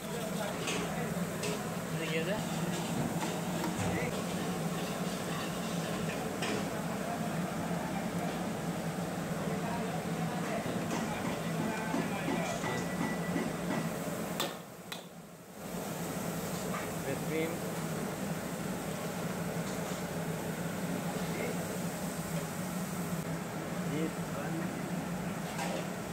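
Metal ladle stirring and scraping masala in a stainless steel wok on a gas burner, with scattered short clicks of metal on metal, over a steady low kitchen hum and indistinct background voices.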